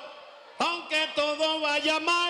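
A man's voice amplified through a microphone and PA, starting about half a second in after a brief lull and holding long, wavering pitched notes.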